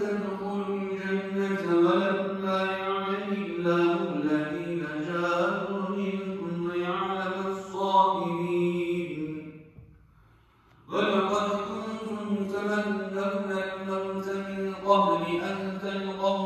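A man reciting the Quran in Arabic in a slow, melodic chant with long held notes. Near the middle he stops for about a second to take a breath, then goes on.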